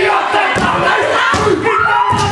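A haka performed by a group of men: loud chanted shouting in unison, with heavy thumps from stamping and slapping.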